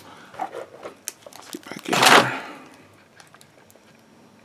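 Handling noise on a wooden tabletop: small clicks and knocks as things are moved and picked up, with one louder brief rustling swish about two seconds in.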